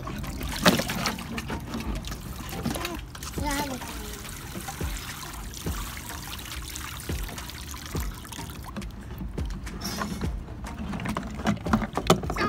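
Water pouring and trickling from a plastic watering can into a shallow plastic kiddie pool, with splashing as toy trucks are pushed through the water.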